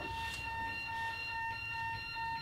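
A steady, high electronic alert tone with overtones, from a device going off in the room; the people present do not know whose device it is.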